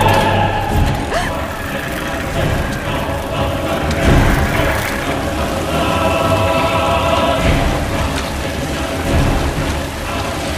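Heavy rain pouring onto wet ground under a horror film score, whose sustained tones swell about six seconds in.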